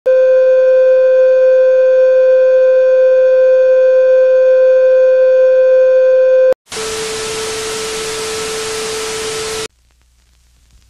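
Television test-card tone: a loud, steady, mid-pitched beep held unchanged for about six and a half seconds, ending in a click. After a brief gap comes a loud hiss of TV static with a fainter tone under it; the hiss lasts about three seconds and cuts off suddenly shortly before the end.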